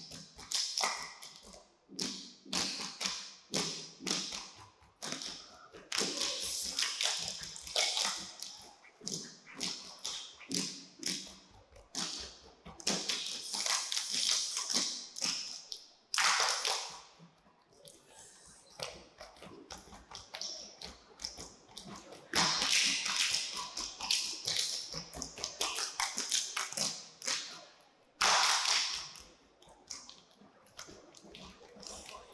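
Saman dance body percussion: a row of kneeling dancers clapping their hands and slapping their chests in tight unison, in rhythmic phrases separated by brief pauses. The phrases speed up into rapid, dense runs of slaps several times, most strongly in the second half.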